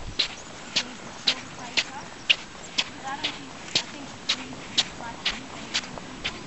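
Footsteps squeaking in dry, fine quartz beach sand, about two steps a second, each step a short high squeak.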